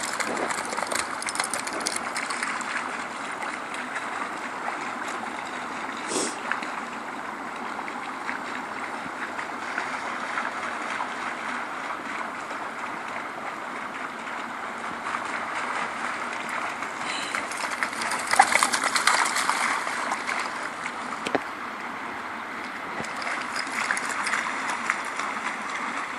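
Snowmelt runoff flowing steadily over a low weir and around stepping stones, with a louder stretch about eighteen seconds in.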